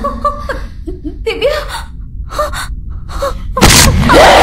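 A woman's short frightened gasps and whimpers, a string of brief breathy cries with pauses between, then a sudden loud burst near the end as she startles.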